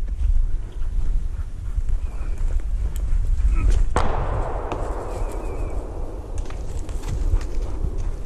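A single shotgun shot about halfway through, its report echoing and dying away over about three seconds. A low rumble of wind and movement on the microphone runs underneath.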